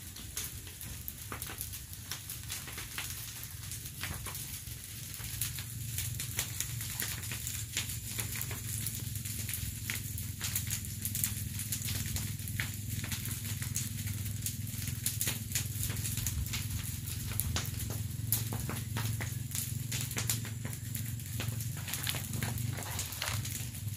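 A pile of dry banana leaves burning in the open, crackling and popping irregularly, over a steady low hum.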